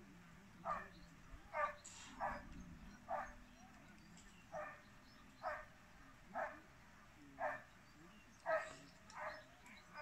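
An animal calling in short, repeated calls, about one a second, all alike.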